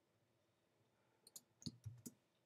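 A few quick, sharp clicks of computer keyboard keys being typed, starting about a second in; otherwise near silence.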